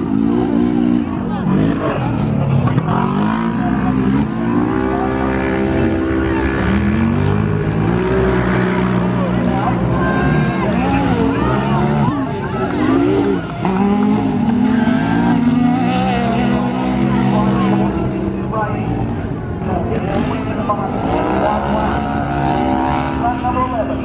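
UTV race car engines revving hard over a dirt track, the pitch climbing and dropping again and again as the cars accelerate and lift off the throttle.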